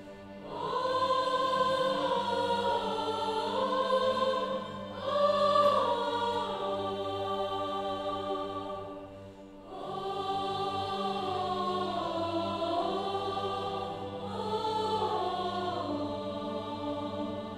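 Mixed choir of men and women singing with a string orchestra, in long sustained phrases with short breaks between them, over a held low note.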